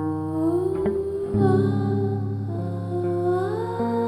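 Slow improvised music: a woman's wordless humming voice sliding smoothly between pitches over long sustained notes from a hollow-body electric guitar.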